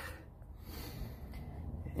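A quiet pause in talk: a faint breath over a low steady hum.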